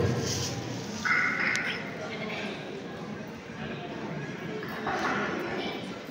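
Quiet ambience of a large hall with hard floors: indistinct low voices and movement, with a brief click about a second and a half in.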